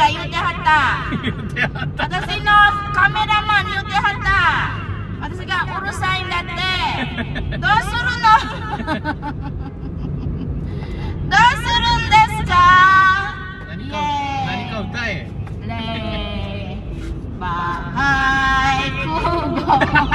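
A woman singing into a handheld karaoke microphone in long held phrases, over the steady low rumble of a car on the road.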